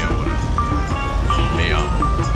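Electronic soundtrack of a shared film: a short high beep repeating about every 0.7 s over a steady low bus rumble, with a falling synthetic swoop near the end.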